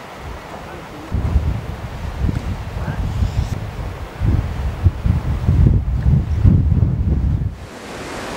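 Wind buffeting the microphone: an uneven, gusty low rumble that picks up about a second in, is strongest in the second half and dies down just before the end.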